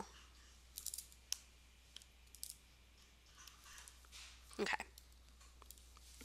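Faint, scattered clicks of a stylus tapping on a pen tablet: a small cluster about a second in, then single clicks over the next second and a half.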